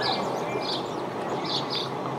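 Small birds chirping: short high chirps repeating two or three times a second over a steady outdoor background hiss.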